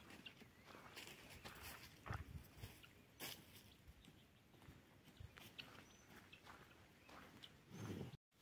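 Near silence: faint outdoor ambience with scattered soft clicks and rustles, and a couple of low knocks about two and three seconds in.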